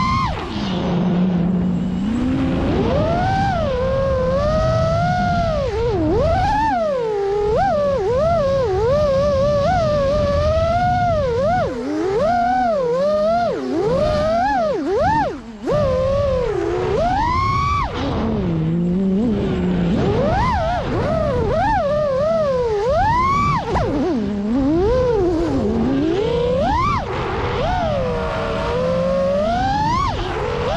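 Five-inch freestyle FPV quadcopter's brushless motors (Xing2 2207 1855 kV) and props whining, the pitch sweeping up and down constantly as the throttle changes, with one short drop in level about halfway through.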